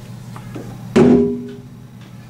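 A hand drum struck with the hand: a couple of faint taps, then one strong stroke about a second in whose pitched tone rings for over half a second, the opening of a rhythm played as a demonstration.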